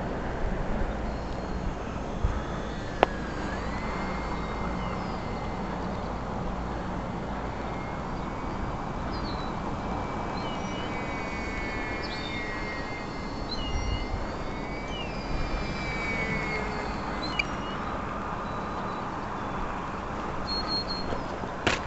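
Distant whine of a small electric RC plane motor, wavering up and down in pitch as the throttle changes, over a steady background of noise. A sharp click comes about three seconds in.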